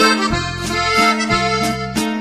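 Accordion-led Mexican corrido playing an instrumental accordion fill between sung lines, over a steady repeating bass line.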